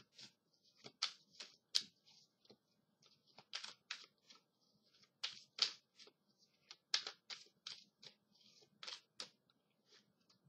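A deck of tarot cards being shuffled by hand: a faint, irregular patter of card flicks and clicks, a few a second.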